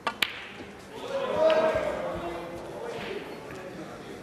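Snooker balls clacking: two sharp clicks in quick succession, cue tip on cue ball and then cue ball on object ball. About a second later a swell of crowd voices rises and fades over two seconds.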